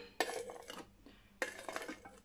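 Knife scraping carrot slices off a plastic cutting board into a Thermomix's steel mixing bowl, in two strokes about a second apart, the slices dropping onto the vegetables inside.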